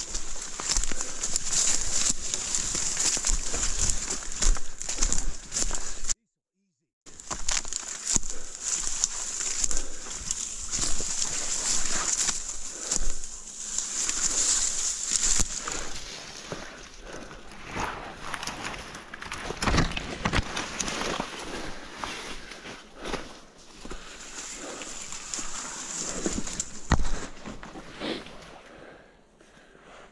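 Footsteps and brush rustling and crackling as a person pushes through thick woodland undergrowth, with a steady high hiss behind it that weakens about halfway through. The sound cuts out completely for about a second near the start.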